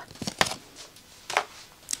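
A few short, light taps and rustles as a paper card and a foil packaging pouch are handled and set down on a wooden table.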